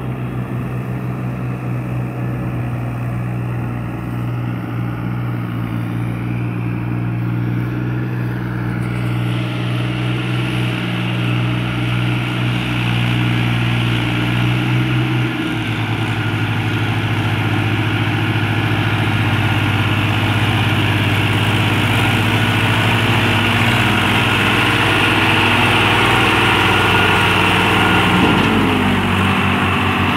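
Diesel tractor engines working hard under load: one tractor towing a second tractor and its loaded trolley through deep paddy-field mud. The engine note is steady, drops slightly in pitch about halfway through, and grows gradually louder as the tractors come closer.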